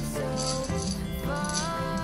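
Background music from a song: held melody notes that slide up and down in pitch over a steady bass line, with a rattling percussion beat ticking about three to four times a second.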